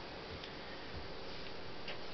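Two faint, light clicks of hands handling the plastic casing of an Akai PM-C6 cassette boombox, one about half a second in and one near the end, over a faint steady hiss.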